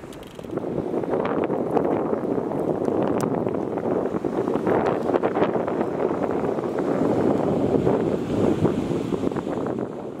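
Wind buffeting the microphone: a steady rushing noise with many small crackles.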